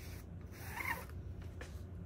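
A plastic applicator card scraping black paste across a mesh stencil on window glass: one short rasp about half a second in, then a faint tick near the end, over a low steady hum.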